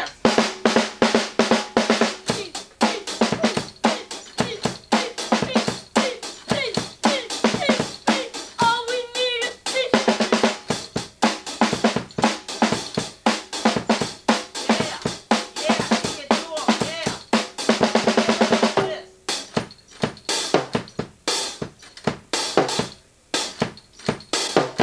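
A drum kit played as a loud, fast break: dense rapid hits, thinning to sparser, spaced hits about nineteen seconds in.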